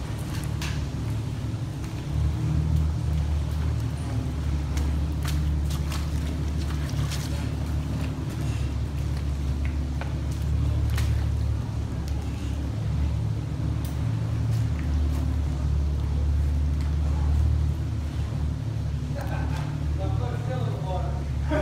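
Jeep engine running steadily at low revs inside a tunnel, a constant low hum, with scattered faint clicks over it.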